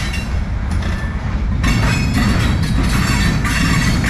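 Loaded freight cars of a long manifest train rolling past close by: a loud, steady rumble of steel wheels on rail, with a high metallic ring or squeal from the wheels that fades for about a second and a half near the start and then returns.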